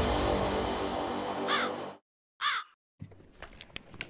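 Sustained electronic intro music fading away, then a crow caws twice, about a second apart, at about one and a half and two and a half seconds in.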